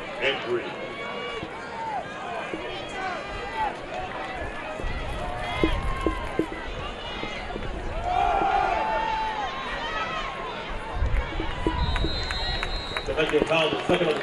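Stadium crowd noise at a football game: many overlapping voices of fans and players calling out, with a few low rumbles. About twelve seconds in, a short, high, steady whistle blast sounds, a referee's whistle blowing the play dead.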